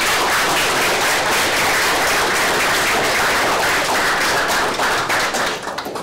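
An audience applauding: dense, steady clapping that thins out into a few last claps near the end.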